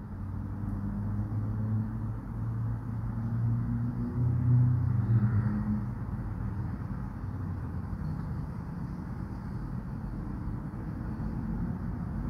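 Low background rumble with a low droning hum that swells through the first half and fades out about halfway through.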